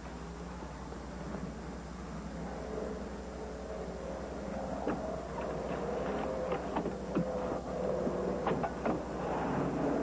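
Car engine running and growing steadily louder, with several sharp knocks in the second half.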